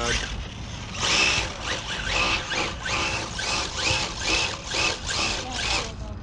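RC drift car revved in short repeated bursts, about two a second, its motor whining and tires spinning on asphalt while it stays in place; a tire sounds as if it is coming undone.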